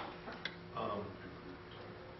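Two sharp clicks about half a second apart, then a man's brief "um", over a steady low hum.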